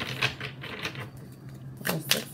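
Tarot cards being handled and flipped: a few light clicks and flicks, a quieter stretch, then a sharper snap of a card just before the end.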